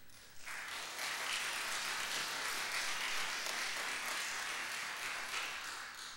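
Congregation applauding, starting about half a second in, holding steady, then dying away near the end.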